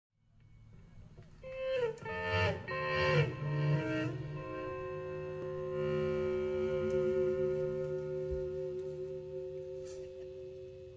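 PRS CE 24 electric guitar playing a solo intro through effects: a few sliding notes in the first half, then long sustained notes that slowly fade.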